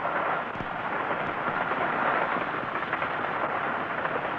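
Steam-hauled express train running at speed, its wheels on the rails making a steady, even noise with no distinct beat, on an old film soundtrack that cuts off the high end.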